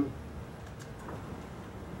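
Battery-powered height actuator of a Transmotion TMM5 power stretcher chair running with a steady low electric hum as the chair is lowered.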